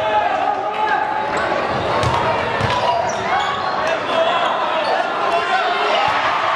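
A basketball being dribbled on a hardwood gym floor, with a few bounces standing out about two seconds in, under the steady voices and shouts of a crowd in a large gym.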